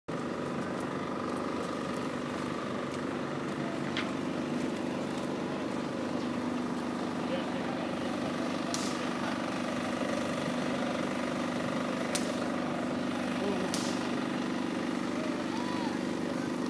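A steady droning hum over a haze of outdoor background noise, with faint distant voices and a few light clicks.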